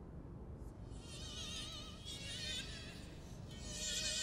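A flying insect buzzing, its thin whine wavering in pitch as it comes and goes, over a low steady rumble of background ambience.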